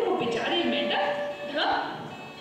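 A storyteller's voice over a microphone with live music from a small band, and one note held steadily near the middle.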